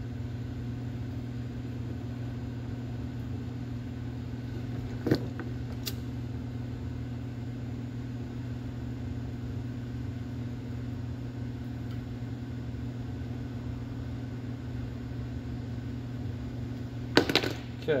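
Steady low hum in a workshop, with light handling sounds as wiring is pushed into a plastic headlight housing: a sharp click about five seconds in and a fainter one a second later.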